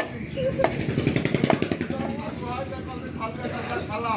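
An engine running close by, heaviest in the first half, over two chops of a meat cleaver on a wooden chopping stump.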